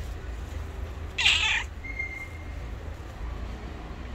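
A tabby street cat meowing once, a short loud meow about a second in, asking for food. A steady low rumble runs underneath.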